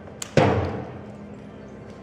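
A deep ceremonial drum struck once, about half a second in, its boom fading slowly over more than a second. A faint tap comes just before the beat.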